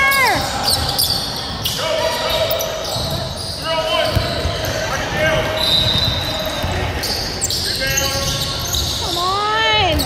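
Basketball dribbled on a hardwood gym floor, with sneakers squeaking and players shouting, echoing in a large gym. A loud shout comes near the end.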